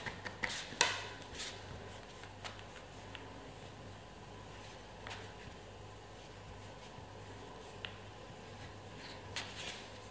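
Quiet handling of a metal ball tool and gumpaste leaves on a foam pad: a few light clicks and taps in the first second, then scattered faint ticks, over a low steady hum.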